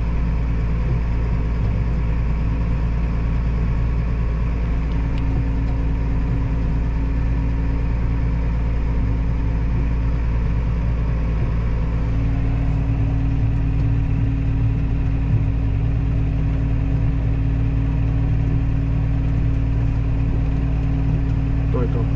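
Case IH Puma 155 tractor's six-cylinder diesel engine running at a steady speed, heard from inside the cab as the tractor drives slowly along.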